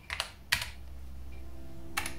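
Clicks of the hardware buttons on a Polyend Tracker being pressed, the sharpest about half a second in, then a steady low pitched tone held under them from about a second in.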